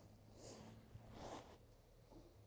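Near silence: room tone with a few faint, soft swishes.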